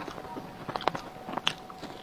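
Close-miked eating sounds of a person biting and chewing food, with several short crisp clicks in the middle. A faint steady tone runs underneath.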